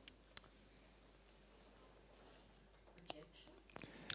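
Near silence with a few faint mouth clicks close to a handheld microphone: one just under half a second in, and a few more near the end, just before speech begins.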